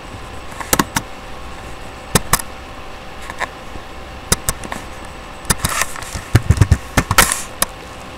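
Irregular sharp knocks and clicks, a few in the first half and a quick cluster of them in the second half, over a faint steady hum.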